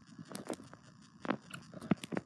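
Faint room noise with a few scattered soft clicks and taps.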